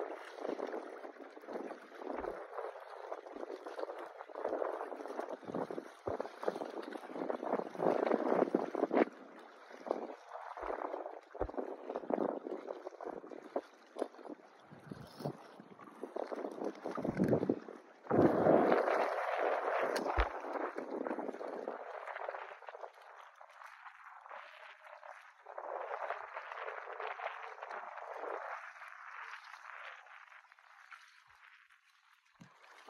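Shallow bay water sloshing and lapping close to the microphone, swelling and fading every few seconds and loudest a little past the middle.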